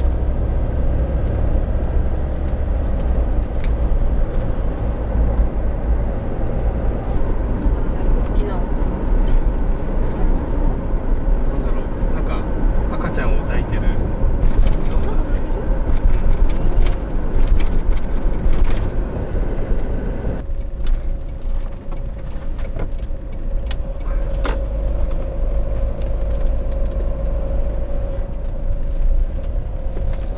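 Camper van cab noise while driving: a steady engine and road rumble. The upper range thins and the noise drops a little about two-thirds of the way through as the van slows.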